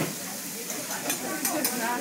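Food sizzling on a steel teppanyaki griddle, with sharp clicks and scrapes of a metal spatula against the plate.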